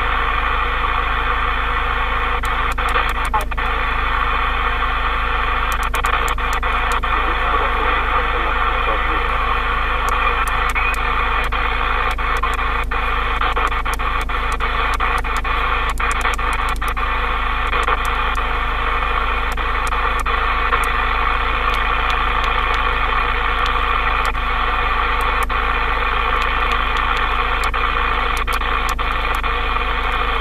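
President Lincoln II+ transceiver in sideband (USB) mode giving out steady receiver static and band noise while being tuned across 27 MHz channels, with short crackles and clicks scattered through it.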